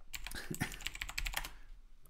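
Typing on a computer keyboard: a quick run of key clicks that stops about one and a half seconds in.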